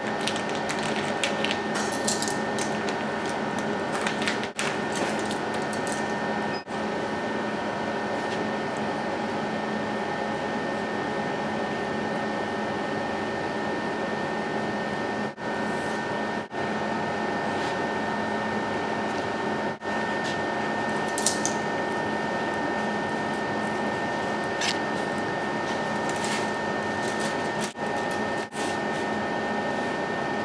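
A steady mechanical hum with a faint fixed whine, like a kitchen fan, broken by several short sudden dropouts. Now and then there are brief crinkles of a plastic pack as the squid is unwrapped and handled.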